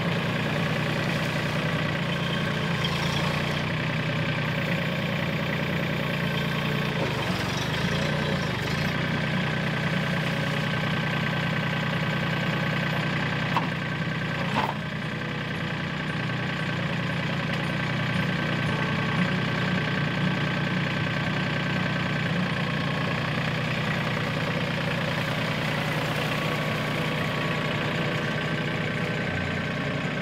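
Mahindra compact tractor's diesel engine running steadily while it works its front loader into a manure pile, with a single sharp knock about halfway through.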